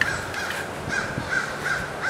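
A crow cawing repeatedly, about five short caws in quick succession, declaring its presence.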